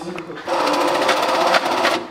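Electric banknote counting machine running a stack of bills through, a rapid, fast-ticking rattle of notes feeding that starts about half a second in and stops shortly before the end.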